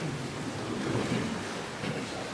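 A congregation sitting down in the pews: an even wash of shuffling and rustling.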